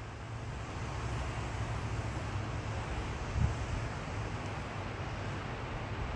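Wind on the microphone outdoors: a low, uneven rumble over a steady hiss, with one louder gust about three and a half seconds in.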